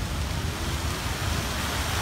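Many fountain water jets spraying up and falling back onto the lake surface: a steady, rain-like hiss of splashing water over a low rumble.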